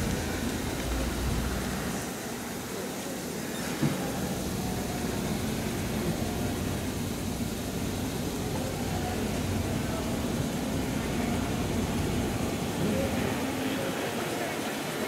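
Street traffic: a car passes in the first couple of seconds, then a steady traffic noise follows. There is a single sharp knock just before four seconds in.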